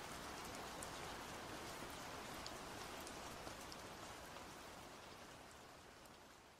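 Faint rainfall: a steady hiss of rain with scattered small drop ticks, fading out slowly over the last couple of seconds.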